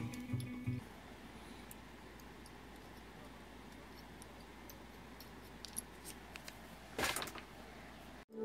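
Background music that stops under a second in, then quiet room tone with a few faint light ticks and a brief louder rustle about seven seconds in.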